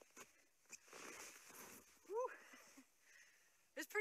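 A person jumping off snowshoes down into deep, loose snow: a soft rush of snow lasting under a second, followed by a short exclaimed vocal sound.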